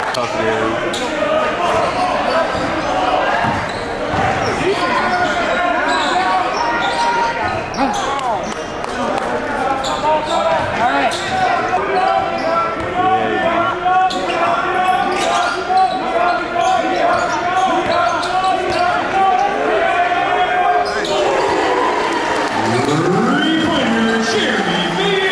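A basketball bouncing repeatedly on a hardwood gym floor during live play, over a constant murmur of crowd voices, all echoing in a large gymnasium.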